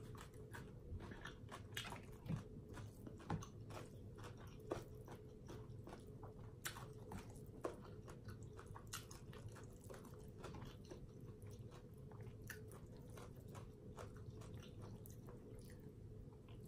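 Quiet, close-up chewing of a mouthful of papaya salad: irregular wet mouth clicks and smacks scattered throughout, with a faint steady hum underneath.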